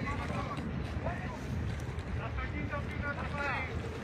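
Steady low rumble of wind on the microphone and a boat on the water, with people talking at intervals over it.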